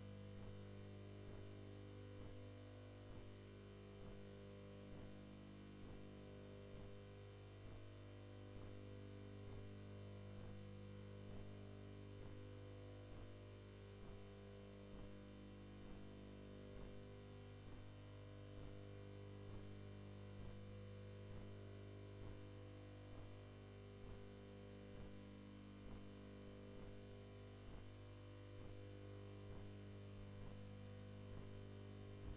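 Faint, steady electrical mains hum with a buzzing stack of higher overtones, unchanging throughout.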